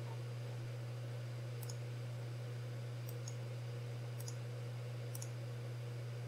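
A few faint computer mouse clicks, about five spread over several seconds, over a steady low electrical hum.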